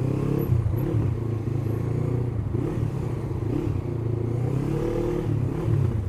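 Honda CBF500 parallel-twin motorcycle engine running at low road speed, its pitch rising and falling with small throttle changes.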